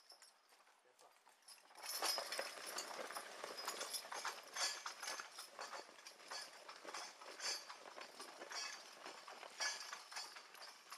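Team of Percheron draft horses pulling an Oliver 23A horse-drawn sulky plow through the soil: hoofbeats mixed with the clatter of harness and the plow's steel frame. The clatter rises sharply about two seconds in, then goes on unevenly as dense clicks.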